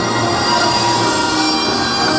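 Korean pungmul folk band playing: a loud, dense, unbroken wall of many held tones.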